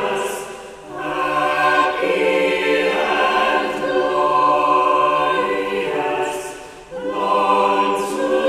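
School choir of pupils singing held chords together, the sound dipping briefly twice between phrases, about a second in and near the end.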